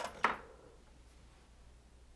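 Near silence: quiet room tone, with two faint short clicks in the first half-second.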